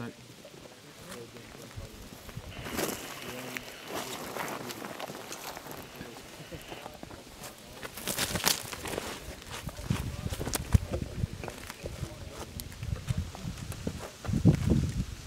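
Handling noise around a mortar crew in dry grass: rustling of gear and boots, with scattered sharp clicks and knocks that grow busier in the second half.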